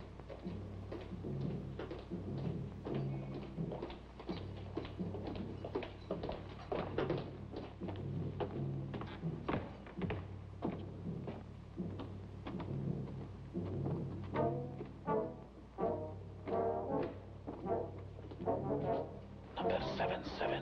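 Dramatic orchestral underscore: low brass holding long notes that step from one pitch to another, with footsteps knocking under it as the prisoner is marched along.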